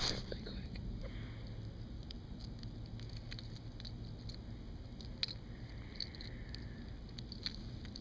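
Scattered small clicks and rustles of hands working a MirrOlure's hooks out of a ladyfish's mouth, with a bump right at the start.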